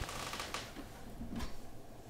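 A few faint clicks and handling rustle as a USB wireless receiver dongle is pulled out of the computer.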